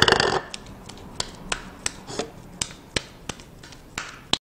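A lump of seasoned minced beef and tofu mixture being thrown repeatedly into a ceramic bowl, kneading it firm and sticky so the patties will not crack. It makes a loud slap at the start, then a run of sharp slaps, about two or three a second.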